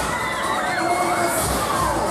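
Many riders on a swinging fairground thrill ride screaming and shouting together in overlapping, rising and falling cries, over loud fairground music with a low bass beat.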